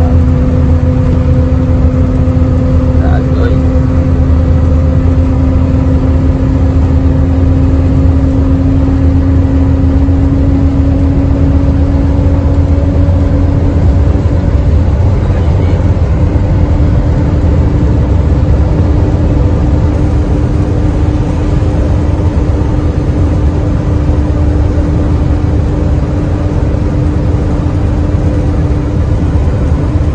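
Truck engine and road noise heard from inside the cab at cruising speed: a steady low rumble with an engine drone that rises slowly in pitch as the truck gains speed.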